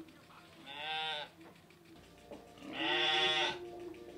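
Sheep bleating twice: a short call about a second in, then a longer, louder one near the end.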